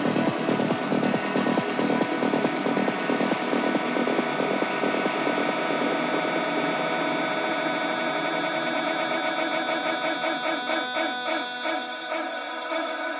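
Progressive psytrance track. The kick drum and bass fade out over the first few seconds, leaving a breakdown of layered synths pulsing in a fast pattern.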